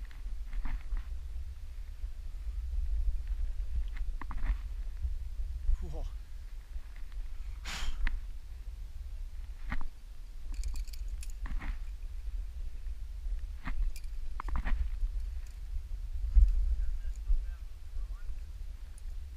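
Helmet-camera audio on a rock climb: a steady low rumble of wind on the microphone, with scattered short clicks and scrapes of climbing gear and hands on the rock, and the climber's breathing. A louder low thump comes near the end.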